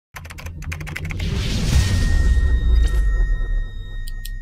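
Sound effects for an animated logo: a quick run of sharp clicks, then a swelling whoosh over a deep low rumble, with a steady high ringing tone coming in about halfway through.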